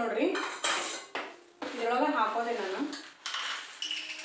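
Steel kitchen plates and bowls clattering in short bursts, with dry seeds being tipped about on a plastic tray.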